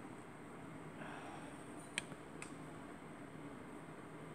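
Quiet room tone with two small, sharp clicks about half a second apart, midway through.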